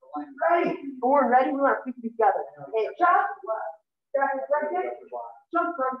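A person's voice speaking in short phrases with brief pauses; no other sound stands out.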